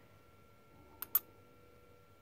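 Two light clicks close together about a second in, as a small solid brass blank is set down and nudged on an embossing die; otherwise only faint room tone with a thin steady whine.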